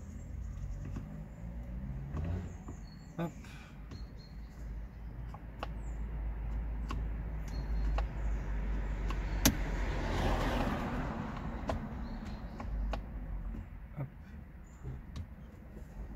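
Scattered small plastic clicks and taps at the steering column as a replacement gear selector lever is fitted and its housing closed, with a screwdriver being handled, over a steady low rumble. A sharp click comes about halfway through, followed by a rush of noise that rises and falls.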